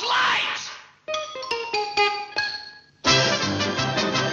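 Orchestral cartoon score. A loud burst dies away in the first second, a short run of separate plucked string notes follows, and about three seconds in the full orchestra starts the closing theme over the end card.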